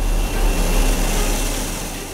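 Jet engine noise from a Sukhoi Su-57 fighter's twin turbofans as it climbs away after takeoff, loud with a deep low end and a faint high whine, fading gradually toward the end.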